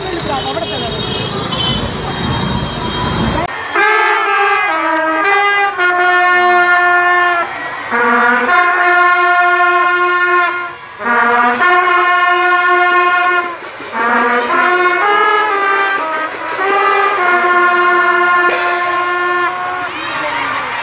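A school marching band's brass section playing a tune in long held notes, phrase after phrase with short breaks between. The first few seconds are a low rumbling noise before the band starts.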